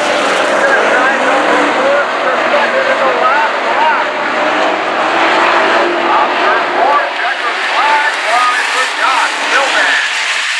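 A field of dirt-track modified race cars running around the oval, their engines revving and lifting in many overlapping rising and falling tones.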